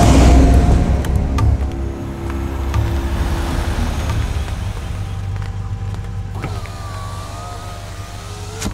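A Toyota MPV's engine running as the car moves slowly along, a steady low rumble that is loudest in the first second.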